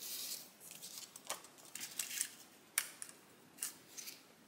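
A short rustle of a plastic sticker sheet, then a few light clicks and scrapes of a small craft pick-up tool against the sheet as it pries adhesive enamel dots loose.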